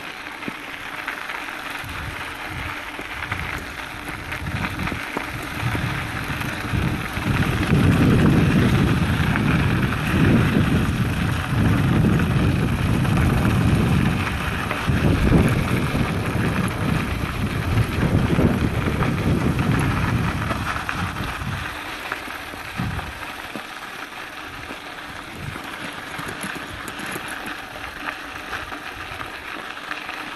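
A mountain bike rolling downhill on a gravel dirt trail, with tyre noise and wind rushing over the phone's microphone. The low wind rumble swells louder for about fifteen seconds in the middle, then settles back.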